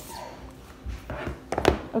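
Apple Watch paper-and-cardboard packaging being pulled apart and handled: soft rustling, then a few sharp knocks and clicks about one and a half seconds in.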